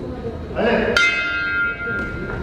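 Boxing ring bell struck once about a second in and ringing for nearly a second, signalling the start of the round. A short shout comes just before it.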